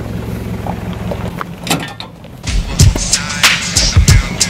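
A vehicle engine running with a low, steady hum, then about two and a half seconds in a hip-hop music track starts, with a loud, heavy drum beat.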